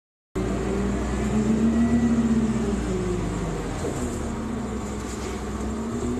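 Cabin sound of a 2001 New Flyer D40LF transit bus under way: its Cummins Westport ISC-280 engine and ZF Ecomat automatic driveline with road rumble, heard from inside the bus. The engine note climbs, drops back about three seconds in, then carries on steadily.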